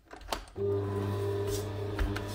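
An electric stand mixer is switched on with a click, and about half a second in its motor starts running with a steady, even hum as it mixes butter into flour.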